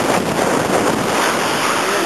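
Steady, loud wind noise from air rushing over the microphone of a paraglider in flight.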